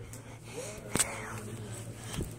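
A faint, soft voice over a steady low hum, with one sharp click about a second in.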